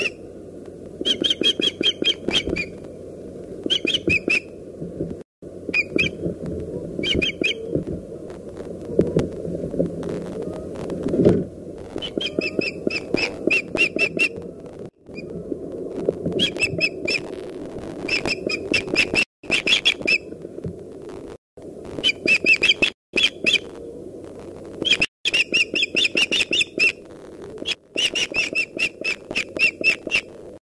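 Osprey calling over and over: bursts of several short, high-pitched piping notes in quick succession, repeated every second or two. A steady low rumble of background noise lies under the calls.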